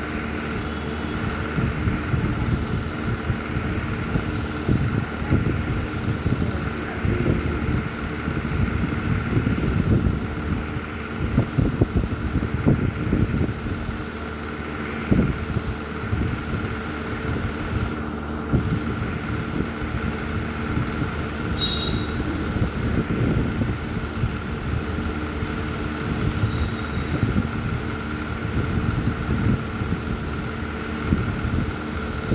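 Steady low mechanical rumble with a constant hum and irregular low thuds, with a brief faint high tone about two-thirds of the way in.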